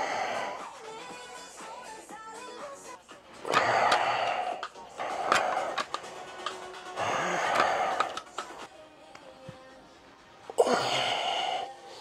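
Background music, with four loud, forceful exhalations lasting about a second each from a man lifting dumbbells.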